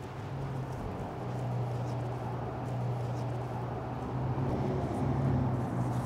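A gloved hand rubbing olive oil over a raw cod fillet on a wooden cutting board, over a steady low hum.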